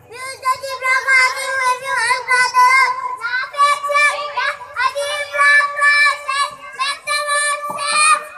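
Young boys singing into a handheld microphone in high children's voices, holding long steady notes. A different boy takes over about three and a half seconds in.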